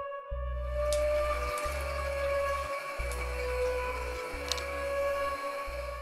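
Background ambient electronic music with a pulsing bass, over which liquid sloshes and splashes in a darkroom tray as a print is rocked in photographic chemistry, with a few light clicks.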